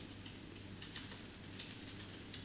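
Faint, irregular light clicks from a laptop being worked by hand, several over two seconds, over a low steady room hum.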